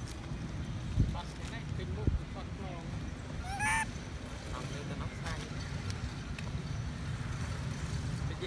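A macaque gives one short, high-pitched squeal about three and a half seconds in, with a few fainter squeaks before and after it, over a steady low rumble.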